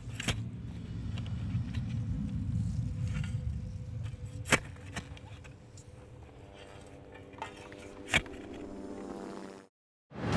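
A low, steady rumble with a faint hum and a few sharp clicks, the loudest about four and a half and eight seconds in, cutting off abruptly just before the end.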